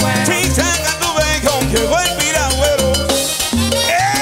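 A live salsa band playing, with congas and a lead singer over it.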